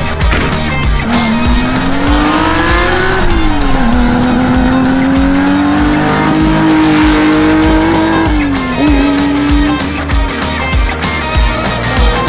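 Air-cooled flat-six engine of a Porsche 911 2.0 S rally car driven hard, its note climbing for about two seconds, falling back about three seconds in, then holding and rising again before dipping near nine seconds and fading. Rock music with a steady beat plays over it.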